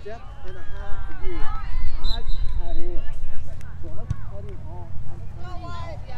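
Several voices shouting and calling out across an open soccer field, overlapping and too distant to make out, over a steady low rumble. A short high steady tone sounds about two seconds in, and a single sharp knock about four seconds in.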